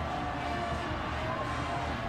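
Stadium crowd cheering after a touchdown: a steady wash of voices and clapping, with a few faint held notes over it.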